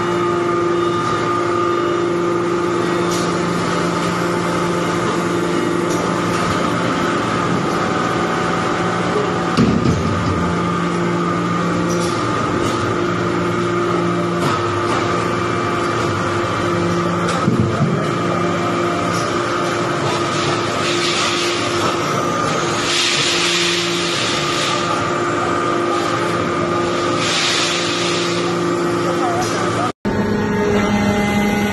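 Hydraulic metal-chip briquetting press running: a steady hum from its hydraulic pump and motor, the lowest tone dropping in and out several times as the press cycles. A few bursts of hiss come in the second half.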